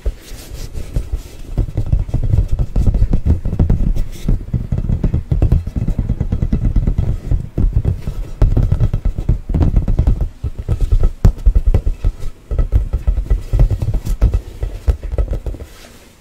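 Fingers tapping and scratching rapidly on an inflated play ball held close to the microphone: a dense run of low thuds with occasional sharper ticks, easing off near the end.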